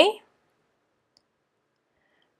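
The tail of a woman's spoken word, then near silence with two very faint tiny clicks.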